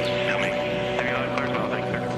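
Archival NASA Space Shuttle launch-commentary audio: a steady hum with faint, indistinct voices in the background.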